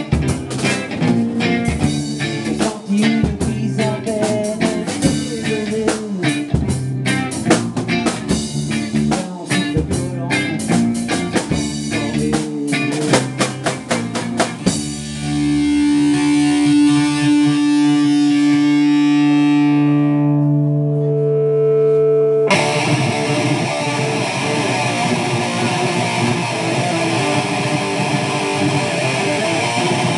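Live rock band playing: distorted electric guitar, bass guitar and drum kit together. About halfway through the drums drop out, leaving long held guitar notes. Then a dense, noisy wall of sound builds without a beat.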